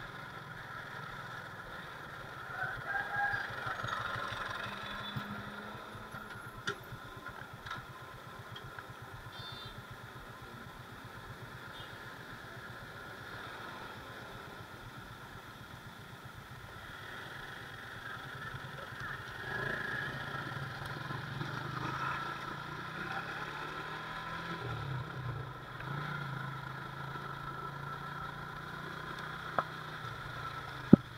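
Yamaha motorcycle engine running at low road speed in traffic, with road noise. It gets louder for a few seconds around three seconds in and again around twenty seconds, with a couple of short sharp clicks.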